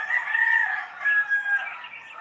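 A rooster crowing: one call that starts suddenly and lasts about a second and a half.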